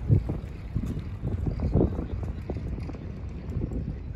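Wind buffeting an outdoor microphone: a steady low rumble broken by irregular low thumps, heaviest in the first half.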